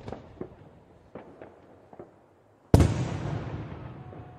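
Fireworks going off across a city: a scattering of sharp bangs, then one much louder bang near the end whose echo rolls and fades away slowly.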